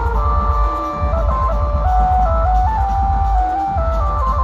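Loud procession music played through a dhumal band's tall loudspeaker stack: a lead melody stepping from note to note over heavy, pulsing bass.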